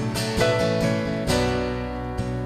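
Acoustic guitar strumming slow chords, a few strokes about a second apart, each left to ring.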